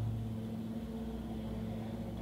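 Room tone: a steady low hum with no other events.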